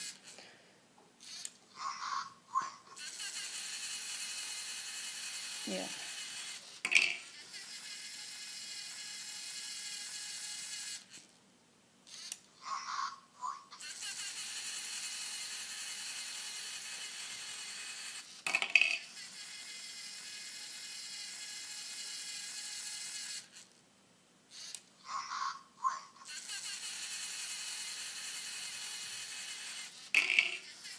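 LEGO Mindstorms colour-sorting robot working through three sorting cycles: each begins with a short burst of the robot's synthesised voice calling out the colour, followed by its motors whirring steadily for about eight seconds as it travels along the row of bins. A single sharp click falls partway through each run.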